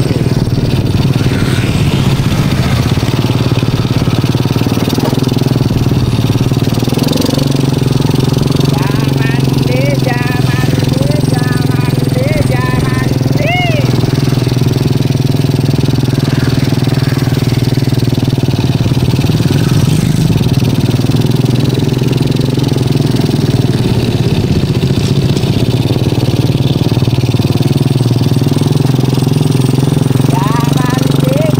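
Small motorcycle engine running steadily as the bike rides along, with a few short rising-and-falling tones over it near the middle.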